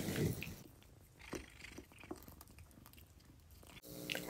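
Quiet room tone with a soft brief rustle at the start and a few faint scattered clicks.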